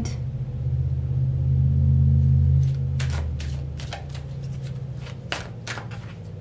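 Tarot cards being handled and drawn: a string of short, sharp papery clicks and snaps through the second half, over a low steady hum that grows louder about a second in and eases off before the clicks begin.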